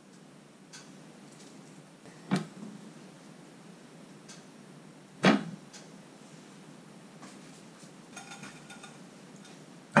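Two sharp knocks about three seconds apart, the knock of something handled on a kitchen counter, with a brief ring after each. Faint crackling follows near the end over quiet room tone.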